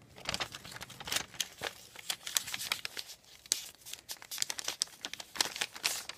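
A sheet of lined paper being folded and creased by hand, crinkling and crackling irregularly.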